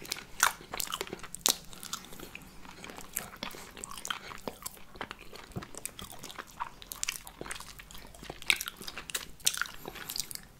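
Close-miked eating of iced gingerbread: biting and chewing, with a steady run of crunches and crackles from the cookie and its hard sugar icing. The sharpest crunches come about half a second in, at about one and a half seconds, and twice near the end.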